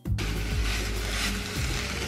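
Vegetable stir-fry sizzling in a hot frying pan, a steady hiss that starts just after a cut, with background music playing over it.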